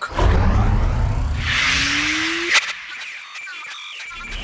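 Produced transition sound effect for an animated title card. A deep, rushing whoosh with a rising tone swells for about two and a half seconds and ends in a sharp hit. A quieter shimmering tail follows.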